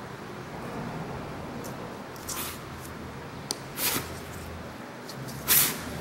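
Handling noise as a press-fitted Delrin bushing is worked up out of the rotary table body: three brief scuffs, the last and loudest near the end, and a small click in the middle.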